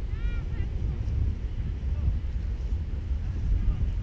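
Wind buffeting the camera microphone, a gusty low rumble. Near the start there is one short rising-and-falling call from a distant voice.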